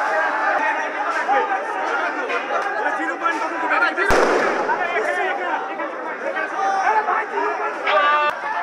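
A crowd of men shouting, with one sharp loud bang about four seconds in, followed by a short echo. The bang is a crude bomb (a "cocktail") going off during a street clash.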